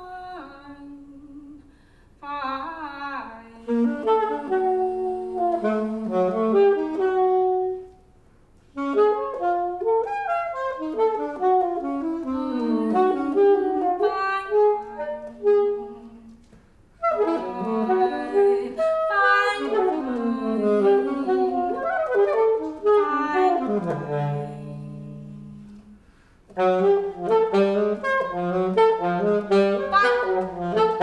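Saxophone improvising in bursts of quick, darting notes, in four or five phrases broken by short pauses. Near the middle of the run one phrase drops to a few low held notes.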